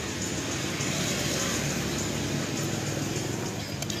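A motor vehicle passing on the street: steady engine and road noise that swells through the middle and eases off near the end.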